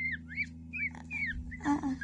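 Newly hatched peafowl chicks peeping: a string of short, high, arching chirps, several a second. Near the end a brief lower voice-like sound joins in, over a steady low hum.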